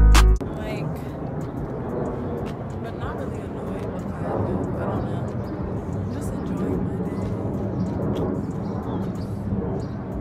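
Intro music with drums stops abruptly about half a second in. After it comes a steady low rumble of wind on a phone microphone outdoors, with a woman speaking quietly under it.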